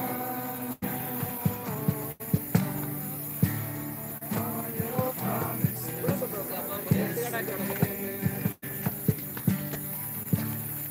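Acoustic guitar strummed while a group of voices sings a worship song. The sound cuts out for an instant three times.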